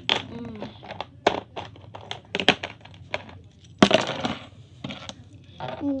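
Small plastic toys being handled and set down on a table: irregular clicks and knocks, a few louder ones, several seconds apart.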